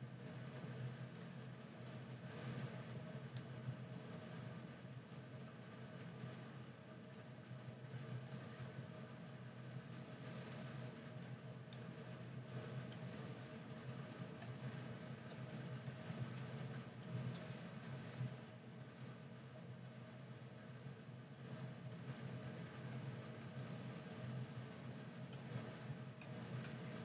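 Low steady hum with scattered faint clicks and light scratches of hand input on a computer during digital painting.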